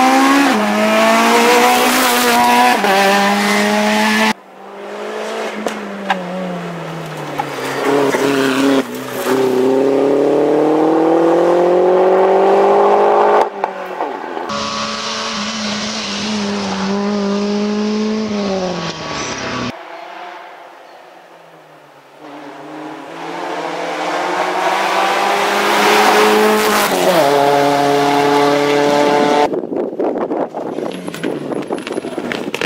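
Rally cars racing on a tarmac stage, one after another in short clips. Each engine revs up through the gears and drops back as the driver lifts off for a corner. One of the cars is a Peugeot 106.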